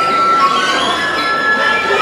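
Folk orchestra violins playing, holding several long, steady high notes together.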